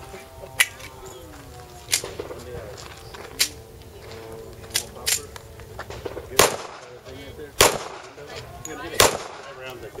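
A slow string of about eight gunshots, roughly one every second or so, with two close together about five seconds in; the last three are the loudest.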